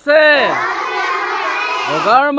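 A class of schoolchildren reciting together in chorus, many young voices at once, repeating a line after their teacher.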